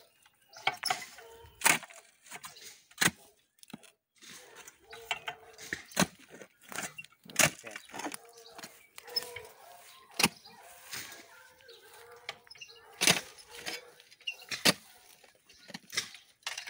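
A two-handled post-hole digger driven into stony soil: sharp knocks of the blades striking the ground, one every second or two at an uneven pace.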